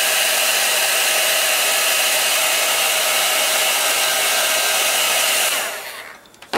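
Embossing heat gun running: a steady rush of air with a constant whine from its fan motor, switched off and winding down near the end.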